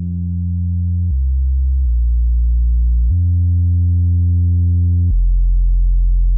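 Minimoog Model D app's 'Kraft Bass' factory preset playing a slow line of deep, smooth held bass notes, each a few seconds or less. The line steps down twice about a second and two seconds in, jumps back up about three seconds in, then drops to its lowest note about five seconds in.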